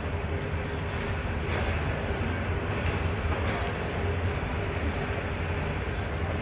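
Passenger train pulling away along a station platform: a steady low rumble of coaches running on the rails.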